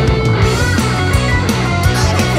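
Instrumental passage of a psychedelic indie rock song: electric guitar over bass and a steady drum beat.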